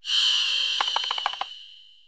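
Logo-sting sound effect: a sudden bright shimmering swoosh with a high ringing tone that fades over about a second and a half, with a quick run of ticks in the middle.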